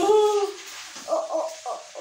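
A howl-like call held on one steady pitch that ends about half a second in, followed by a few short yelps.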